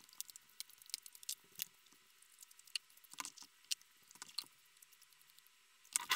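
Faint, scattered clicks and light taps: a bare LCD panel and a cleaning cloth being handled on a silicone work mat.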